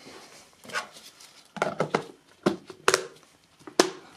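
Plastic food-storage box being handled as its lid is pressed on: a string of sharp clicks and knocks, a few with a short ring, the sharpest near the end.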